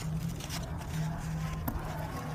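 A steady low hum over a low background rumble, with one sharp click near the end.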